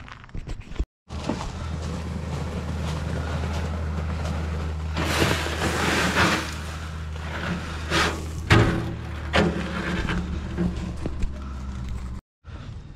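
An engine running steadily with a low hum while a loaded wheelbarrow is pushed over a gravel base. The wheelbarrow rattles and scrapes several times in the second half.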